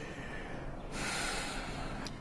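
A person breathing out audibly, a soft rush of air that swells about a second in.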